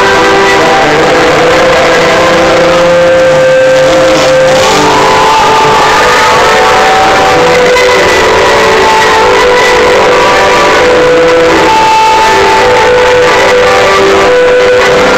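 A live rock band playing loud through a PA, with long held notes over the full band, picked up from the audience.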